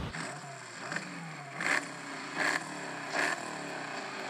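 A recorded engine revving, its pitch rising and falling several times, with four louder bursts of noise about every three-quarters of a second.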